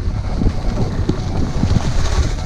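Wind buffeting a GoPro's microphone while skiing downhill, an uneven low rumble with gusts, over the hiss of skis running on snow.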